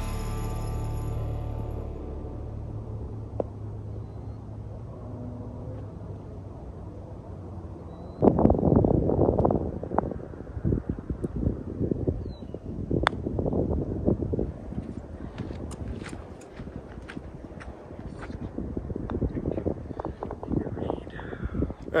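Background music fades out in the first second or two, leaving low steady outdoor noise. From about eight seconds in, untranscribed voices come and go, with a few sharp clicks.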